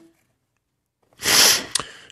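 Near silence, then about halfway in a man's short, loud, hissing burst of breath that fades within about half a second.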